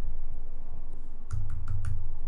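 Computer keyboard keys being pressed: four quick clicks in a row a little past halfway, over a low background rumble.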